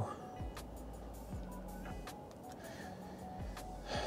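Faint music from the car's radio, playing quietly through the infotainment system's speakers.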